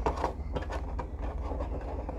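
Handling sounds from a metal collector's tin as fingers work at the plastic tray inside it: a few light clicks and soft rustles near the start, over a steady low hum.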